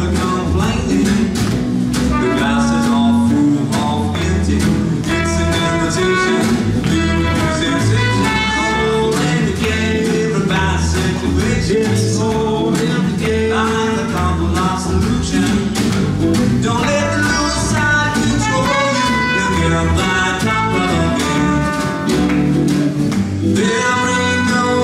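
Live acoustic swing jazz instrumental: two acoustic guitars strumming a steady rhythm over a walking double bass and a snare drum, with a trumpet playing the melodic lead.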